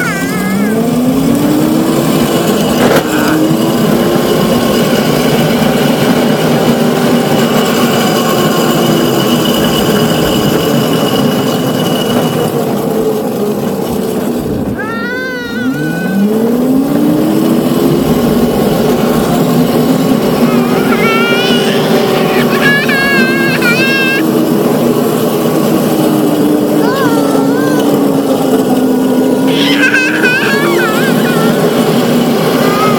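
Electric motor of a Razor ride-on vehicle whining, its pitch rising as it speeds up from a start. About halfway through it drops almost to a stop, then rises again and holds a steady whine. Over it are wind noise on the microphone and a child's high squeals of laughter.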